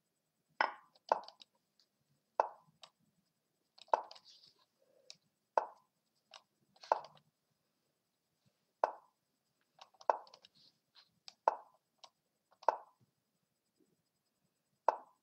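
Lichess move sound effects: about a dozen short wooden knocks at irregular intervals, one for each move played in a fast bullet chess game.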